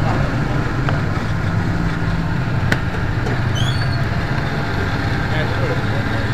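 Electric countertop blender motor running steadily as it blends a fruit shake. Partway through there is one sharp click, followed shortly by a brief high chirping.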